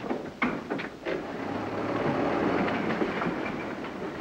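Early open automobile's engine running with a rattling, clattering chug, a few sharp pops in the first second, then a steady run that eases off near the end.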